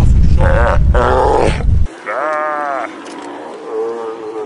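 Steller sea lions calling from a rock haul-out: pitched calls, the clearest about two seconds in, rising then falling in pitch, and a lower call near the end. A loud low rumble covers the first two seconds and cuts off abruptly.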